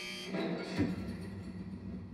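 Horror film trailer soundtrack: a sudden hit at the start, then music over a low steady drone.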